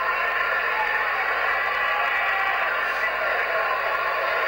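Boxing arena crowd noise: a steady din of many voices.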